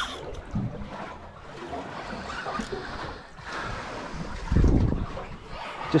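Wind on the microphone and water moving against the hull of a small boat at sea, a steady noisy wash. A loud low thump lasting about half a second comes about four and a half seconds in.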